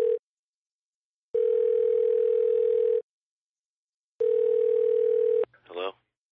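A steady telephone tone sounding in separate long beeps with silent gaps of about a second between them, then a brief rising sound just before the end.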